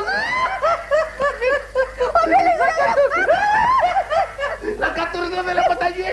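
Men laughing: snickering and chuckling in a run of voiced bursts, with some words mixed in.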